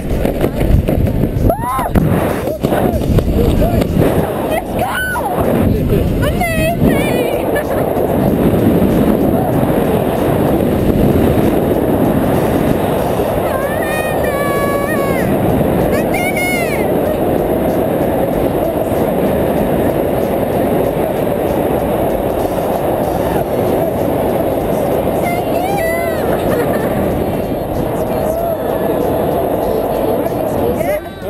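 Heavy wind buffeting the microphone of an action camera during a parachute descent under an open canopy: a steady, loud rush of air. A few brief high-pitched sounds cut through it around the middle.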